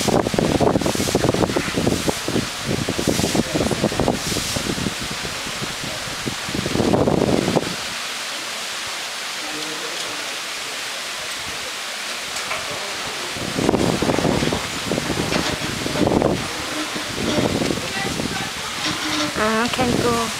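Outdoor ambience: gusts of wind buffeting the microphone in irregular rumbling bursts, dropping away for several seconds mid-way to a steady hiss of wind through leaves, then returning. Faint voices of people are mixed in, with a voice just before the end.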